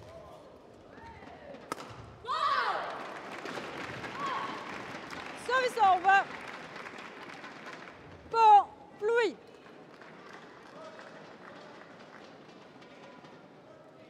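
Shuttlecock struck with a racket once, then a burst of voices and crowd noise as the rally ends and the point is won, followed by short loud shouts: three close together, then two more.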